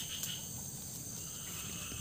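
Faint, steady high-pitched chirring of insects, with a low rumble underneath.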